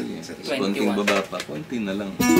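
A man's voice talking, low and broken into short phrases, with no guitar playing yet.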